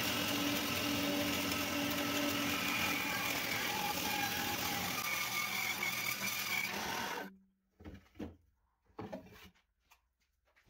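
Dremel benchtop bandsaw running and cutting a curve through a glued-up 2x6 board: a steady motor and blade sound whose tones shift a little as the cut goes. It cuts off suddenly about seven seconds in, followed by a few faint short sounds.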